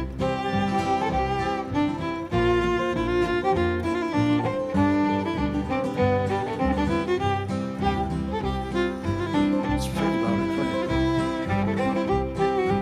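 Fiddle bowing a melody over a steady string-band rhythm: an instrumental fiddle break between the sung verses of a bluegrass song.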